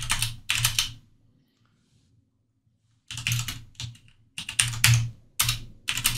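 Typing on a computer keyboard in quick bursts of keystrokes, with a pause of about two seconds in the middle.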